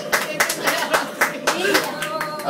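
Hand clapping at the end of a sung duet, several irregular claps a second, with voices talking over it.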